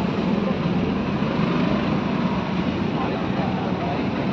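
Steady background rumble of road traffic.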